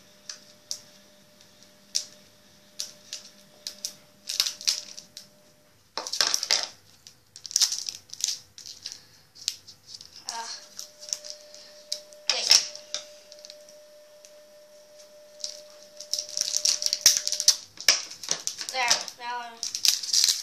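Foil wrapper of a Pokémon booster pack crinkling and rustling in irregular crackly bursts as it is cut open with scissors and the cards are pulled out and handled. The crinkling grows busier near the end.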